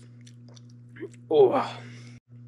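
Faint mouth clicks and a swallow just after a swig from a bottle, over a steady low hum, followed near the end by a man's loud exclamation of "Wow".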